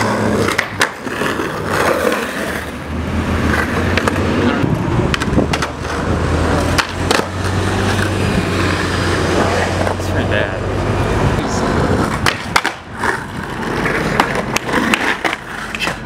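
Skateboard wheels rolling over stone-tile paving with a steady rumble, broken several times by sharp clacks of the board popping and landing.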